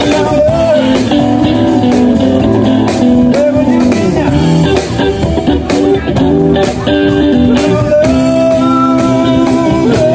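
Blues-rock band music led by electric guitars, with a steady rhythm and long held, bending guitar notes.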